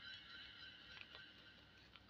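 Near silence: room tone, with a faint high steady tone that fades out in the first second.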